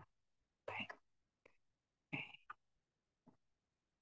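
A person's voice: two short, faint vocal sounds about a second and a half apart, each followed by a smaller one, over near silence.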